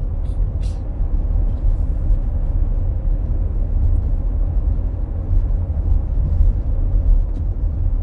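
Steady low road rumble of a moving car, heard from inside the cabin.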